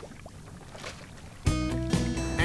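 Faint, steady background noise for about a second and a half, then background music cuts in abruptly with sustained chords and a low bass.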